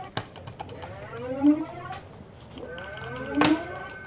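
Computer keyboard keys clicking as someone types, over a rising electronic alarm tone that repeats about every second and a half. A steady high beep comes in about two-thirds of the way through.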